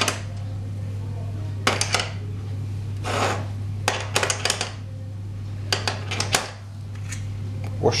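Light metallic clicks and a brief scrape as steel governor weights for a Delphi DP200 diesel injection pump are fitted one by one into their cage on a steel workbench. The clicks come in several short runs, over a steady low hum.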